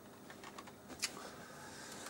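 Handling noise from a small clip-on lavalier microphone being unclipped: a few sharp clicks, the loudest about a second in, then soft rustling of clothing against it.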